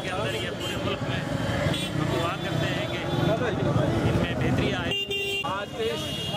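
A man speaking to the camera over the murmur of a street crowd and traffic, with a brief cut about five seconds in.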